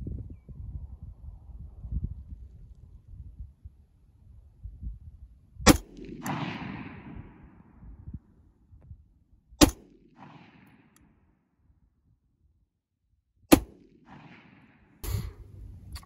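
Ruger Mini-14 semi-automatic rifle in .223/5.56 fired with iron sights: three sharp shots about four seconds apart, each trailing off in an echo, with a fainter crack just before the end.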